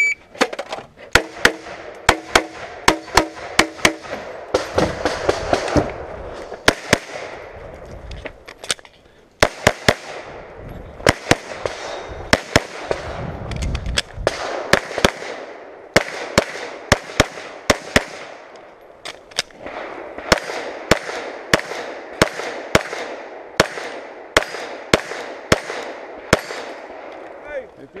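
Glock 34 9mm pistol fired in quick strings of shots, several dozen in all, broken by short pauses between strings.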